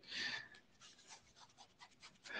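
A soft breath on the remote speaker's microphone in the first half-second, then near silence with a few faint ticks.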